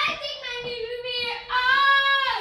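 A young girl singing unaccompanied, holding long notes, with a louder held note near the end.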